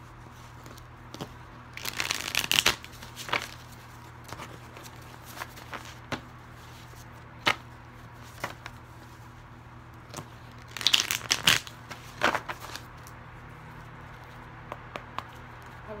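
A deck of tarot cards being shuffled by hand, with two bursts of riffling, about two seconds in and again about eleven seconds in, and scattered taps and clicks of the cards between them.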